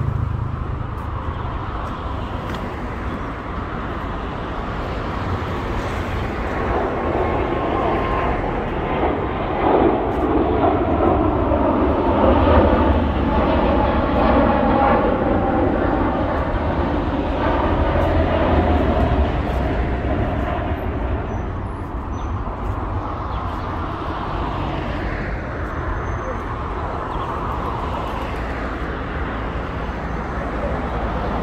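Road traffic beside a pavement, with a long swell of engine noise that builds from about seven seconds in, peaks in the middle and fades again over about fourteen seconds.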